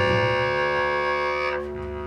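Clarinet holding a long steady note over a double bass in a free-improvised duo; about one and a half seconds in, the clarinet's bright note breaks off and a quieter held tone carries on.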